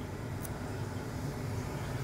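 Steady low background hum, with a faint short tick about half a second in.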